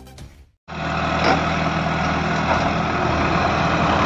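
Diesel engine of a Case 770NX backhoe loader running steadily as the machine digs clay with its backhoe arm. It comes in suddenly, under a second in, after the tail of some music.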